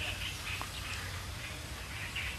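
Pause in speech with a low background hiss and several faint, short high-pitched calls from an animal.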